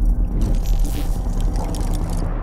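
Cinematic logo-intro sound design: a steady deep low drone under a sustained synth music bed, with a swell of whooshing noise about half a second in.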